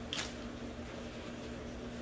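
A brief rustle of a plastic food pouch being set down on a table just at the start, then quiet room tone with a steady low hum.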